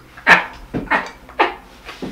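A man's high-pitched laughter: three short, wheezy laughs about half a second apart, each sliding down in pitch.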